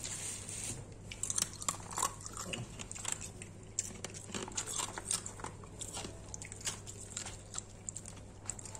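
A paper takeout box and battered fried fish being handled: irregular crackles and rustles of stiff paper and crisp batter.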